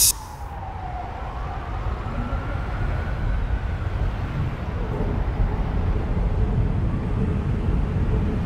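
Street traffic rumble with a faint, distant siren slowly rising and falling in pitch.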